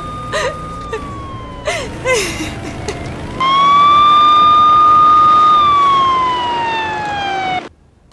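Ambulance siren wailing, its pitch slowly rising, holding and falling. It is quieter in the first seconds under a woman's sobs, becomes loud about three and a half seconds in, and cuts off suddenly near the end.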